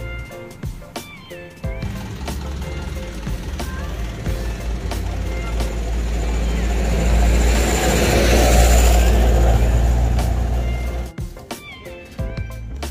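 Background music with a steady bass line runs throughout. Over it a rushing noise swells for several seconds, peaks past the middle and fades before the end.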